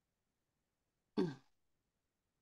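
A man clears his throat once, briefly, about a second in.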